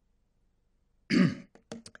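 A man clears his throat once into a podium microphone about a second in, followed by a few short, quieter throat sounds.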